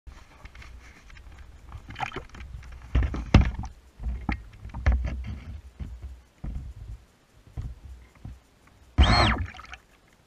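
Water slapping and lapping against the hull of an RC catamaran speedboat sitting on the water, heard through its onboard camera, with irregular low thumps and knocks. A short louder burst with a rising-and-falling tone comes near the end.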